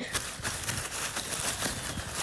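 Hurried running footsteps through woodland, a quick, irregular run of crunching steps.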